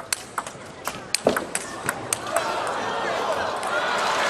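Table tennis rally: a quick series of sharp clicks as the celluloid-type ball strikes the paddles and table. About two seconds in, the rally ends and a crowd starts cheering and clapping, getting louder toward the end.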